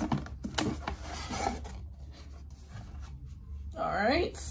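Cardboard perfume gift-set box being opened by hand, its packaging scraping and rubbing with small clicks. The handling is busiest in the first two seconds, then quieter.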